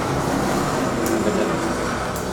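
A steady rumble of a passing vehicle.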